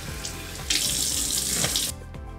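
Bathroom sink tap running and water splashing as a face is rinsed of cleanser. It starts under a second in and cuts off suddenly near the end.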